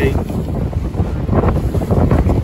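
Heavy wind noise on the microphone, with waves slapping and spraying against the hull of a Mini 6.50 racing sailboat as it drives through steep chop in about 20 knots of wind.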